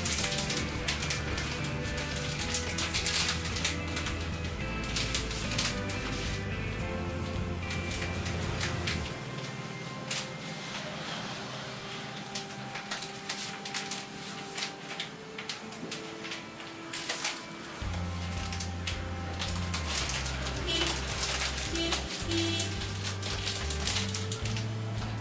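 Background music with a steady bass line, over the crisp rustling and crinkling of sheets of florist's wrapping paper being handled. The music's bass drops out for several seconds in the middle.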